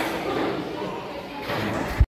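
Several people talking in a large, echoing church, with a low bump near the end as the handheld camera is swung down.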